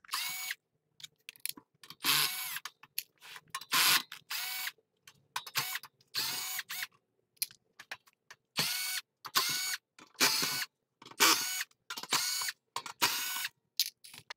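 Black+Decker cordless drill/driver backing out the screws of a metal UPS case cover, run in about a dozen short bursts. Each burst opens with a rising whine as the motor spins up.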